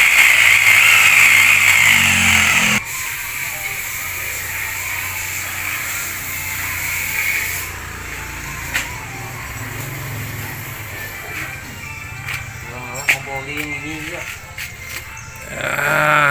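Electric hand drill spinning the oil pump of a Toyota Avanza 1.3 engine out of the car, turning it over to check that oil reaches the cylinder head. It runs steadily with a high whine, then cuts off suddenly about three seconds in.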